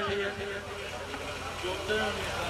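A man's amplified voice trails off just after the start, leaving the faint chatter of people gathered close by over a steady low hum from the sound system.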